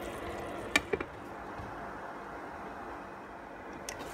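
Glass pot lid set onto a pan of simmering noodles, clinking sharply against the rim twice about a second in and once more near the end, over a low steady hiss.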